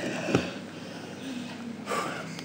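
A man's short, sharp snort through the nose about a third of a second in, as he reacts to the burn of hot chilli peppers.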